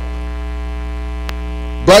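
Steady electrical mains hum, low and buzzy with many overtones, carried through the microphone's audio feed, with a single faint click a little past halfway.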